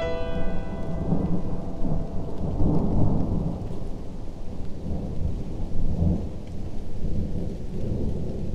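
A low rumbling roar that swells and eases, loudest about three seconds in and again about six seconds in, while the last notes of a ringing chord die away at the start.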